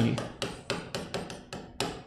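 Marker pen writing on a whiteboard: a quick series of sharp taps and strokes, about five a second.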